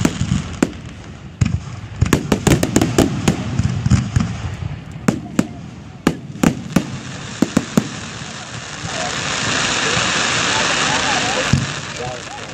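Aerial fireworks shells bursting in rapid succession, many sharp bangs and cracks over the first eight seconds. Then a steady hissing noise swells for about three seconds near the end.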